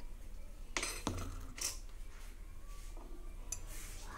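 A few light knocks and scrapes of kitchen utensils being handled and put down, with one duller thump about a second in.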